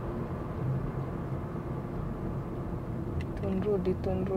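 Steady road and engine noise inside a moving car's cabin, with a faint voice coming in near the end.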